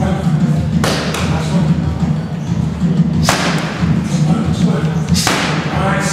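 Boxing gloves striking focus mitts in a padwork drill: sharp punch impacts, the hardest about a second in, at about three seconds and just past five seconds, with lighter strikes between them.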